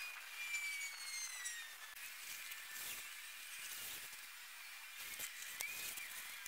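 Faint, steady hiss of a lawn sprinkler spraying water onto a straw layer. A few faint high tones glide downward in the first two seconds, and there are a few light clicks.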